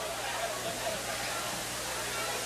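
Gymnasium crowd murmuring, with indistinct voices.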